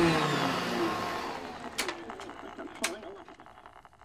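Old radio blaring loud static with a distorted voice in it, fading over the first couple of seconds, with two sharp clicks, and then settling to a faint steady hiss and hum.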